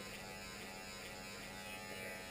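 Electric hair clipper running steadily, its motor and blades giving a faint even hum while it is shaken to clear cleaning spray and loosened hair from the blades.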